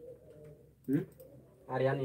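A man's voice humming: a short rising 'hm' about a second in, then a longer held hum on a steady low pitch near the end.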